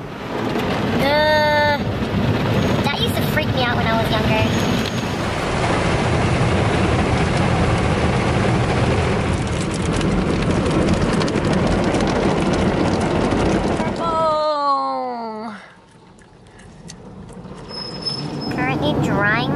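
Automatic car wash heard from inside the car's cabin: water spray and spinning cloth brushes running loudly over the car. Near the end a pitched whine falls away and the noise drops off.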